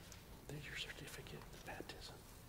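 Faint, hushed talking in low voices, starting about half a second in, with hissy consonants standing out.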